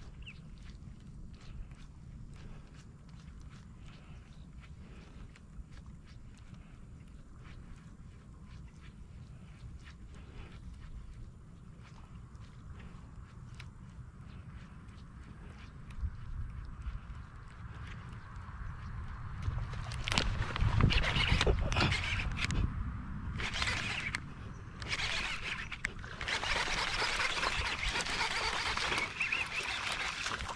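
A low rumble at first, then from about twenty seconds in, loud splashing and thrashing at the water's surface close to the bank as a hooked fish fights on the line, heaviest near the end.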